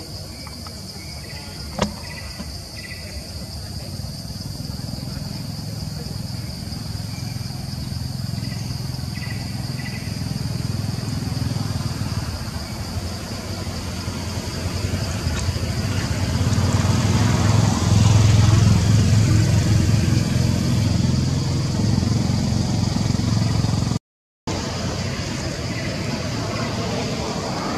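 Outdoor ambience: a low engine rumble from a motor vehicle swells to its loudest about two-thirds of the way through and then eases, over a steady high insect drone. A single sharp click comes about two seconds in.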